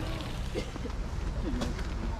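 Hot spring water trickling and splashing out of the rock in a steady wash, with faint voices underneath.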